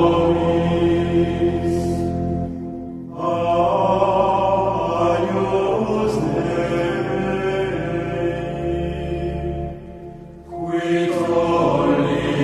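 Background music of a sung chant: long, held vocal phrases, breaking off briefly about three seconds in and again near ten seconds.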